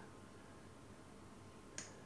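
Near silence: room tone, with a single short click near the end.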